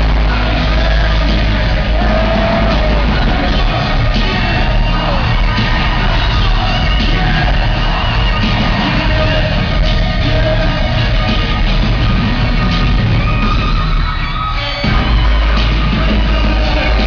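Loud live hip-hop music playing through an arena PA, with heavy bass and a voice over it. The bass drops out briefly near the end, then comes back in.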